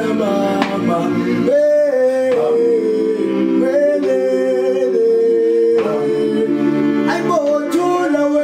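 Group of men singing a cappella in close harmony, a South African gwijo chant, with long held notes that change chord every second or two.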